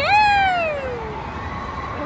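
A high-pitched voice gives one long call that rises sharply and then slides down in pitch over about a second.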